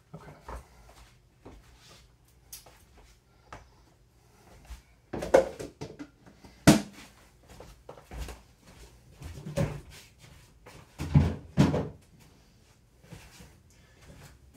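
Kitchen handling noises: a string of irregular knocks and thumps from cupboards and containers being moved about, the sharpest knock about seven seconds in.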